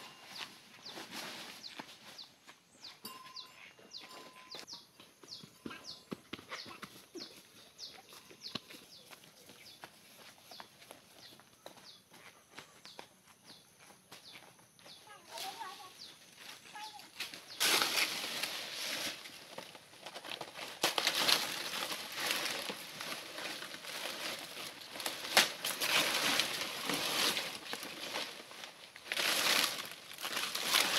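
Large fan-palm leaves rustling and swishing as the cut fronds are handled and dragged; quiet scattered rustles and ticks at first, then loud repeated surges of rustling from a little past halfway.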